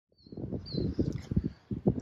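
Wind buffeting the microphone in uneven low gusts, with a couple of faint bird chirps in the first second.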